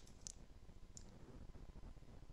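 Two faint computer mouse clicks, about a third of a second and a second in, against near silence with a low steady background hum.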